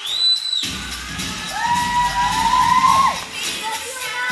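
Audience of schoolchildren cheering and screaming over dance music. A shrill whistle sounds for about half a second at the start, and long high shrieks are held for a second or so in the middle.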